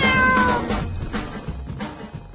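A single cat meow, a bit under a second long and falling slightly in pitch, over intro music.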